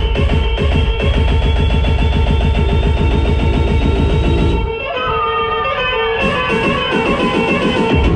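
Progressive trance from a DJ set: a driving kick drum and bassline under a synth tone that slowly rises in pitch. A bit past halfway the kick and bass drop out while synth lines glide, hi-hats come back about a second and a half later, and the full beat returns at the very end.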